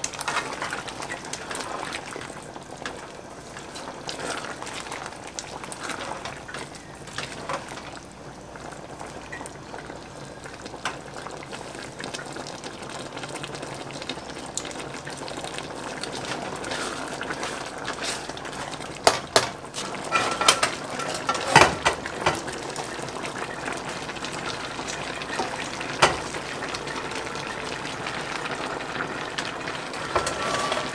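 Creamy pasta sauce simmering in a large metal pot as a spatula stirs it, a steady bubbling hiss. A cluster of sharp clinks of the utensil against the pot comes about two-thirds of the way through, and one more a little later.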